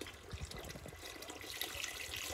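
Birch sap poured from a plastic jug into a steaming stock pot of reducing sap: a faint trickle and splash of liquid.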